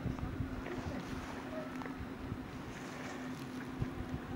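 Wind buffeting the camera microphone in irregular low rumbles and thumps, over a faint steady low hum.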